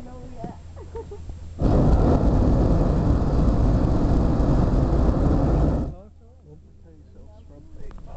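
Hot air balloon's propane burner firing in one steady blast of about four seconds, starting under two seconds in and cutting off abruptly, a burn to heat the envelope and gain height.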